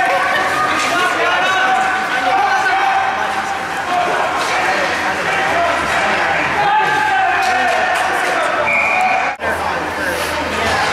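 Overlapping shouting and chatter of voices at a youth ice hockey game in an ice rink, with scattered clacks of sticks and puck. A short whistle blast sounds near the end.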